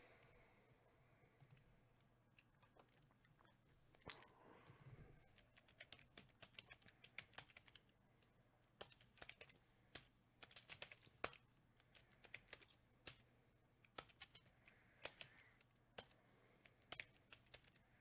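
Faint computer keyboard typing: irregular, quiet key clicks coming in short spurts.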